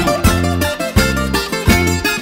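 Instrumental break in a rebetiko song: a bouzouki plays a plucked melody over a steady low accompaniment that falls about twice a second.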